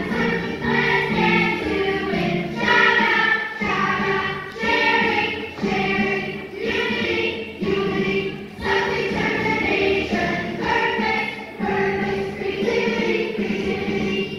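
A group of young children singing a song together in chorus.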